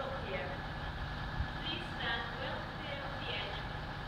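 Low, steady rumble of a distant Class 66 diesel locomotive's two-stroke V12 engine as it approaches. Faint, indistinct voices can be heard over it.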